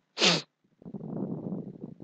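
A short, sharp burst of sound from a person, its pitch falling, followed after a brief gap by about a second of lower, rough noise.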